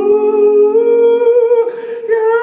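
A man singing long held notes that slide a little in pitch, over a low acoustic guitar note ringing beneath that dies away a little past halfway. The voice dips briefly for a breath near the end before the next held note.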